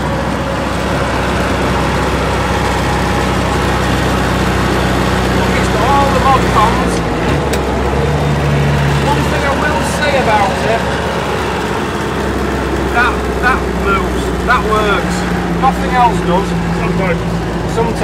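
Inside the cabin of a 1969 Land Rover on the move: a steady, noisy engine and drivetrain drone. Its note changes between about seven and twelve seconds in, then settles back.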